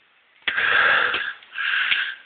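A man breathing heavily through his mouth: one long, noisy breath about half a second in, then a second, shorter one near the end.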